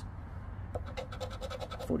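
A poker-chip-style scratcher scraping the coating off a scratch-off lottery ticket in quick, repeated strokes.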